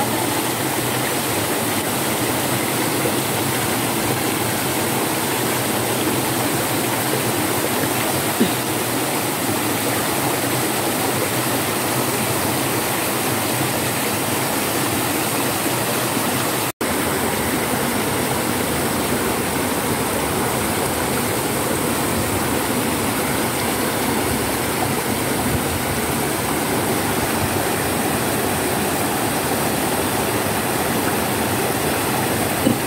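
Mountain stream rushing steadily over small rock cascades, with a momentary cut-out a little past halfway through.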